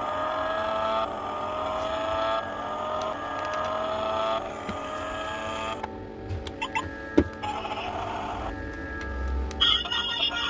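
A toy remote-control car's sound module playing a simulated engine revving through its small speaker, working after repair. The pitch rises again and again, about once a second, for the first six seconds or so. Then come a few handling clicks and a sharp knock about seven seconds in.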